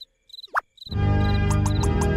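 Crickets chirping steadily in a quiet stretch, with two quick upward-sliding cartoon sound effects; about a second in, background music starts and carries on.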